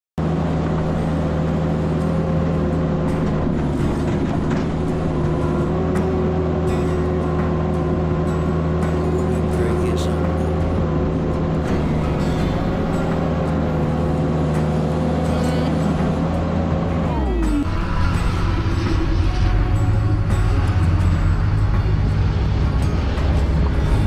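Engine of a Vermeer S800TX tracked mini skid steer running steadily at high revs while the machine drives up into a trailer. Late on, the revs fall quickly and it runs on at a lower speed.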